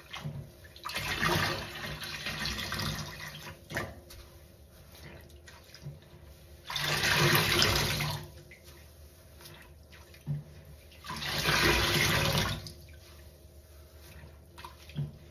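Water gushing and splashing out of a large soaked sponge as it is squeezed by hand into a metal sink: three loud surges of a second or two each, with quieter dripping and wet handling between.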